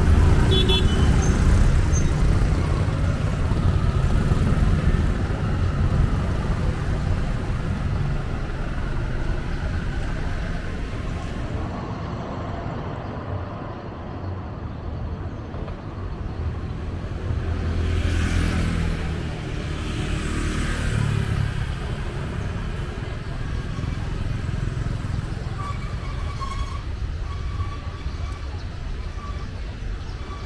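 City street traffic: motorbikes, tuk-tuks and cars running by over a steady low rumble, with one vehicle passing louder about two-thirds of the way through.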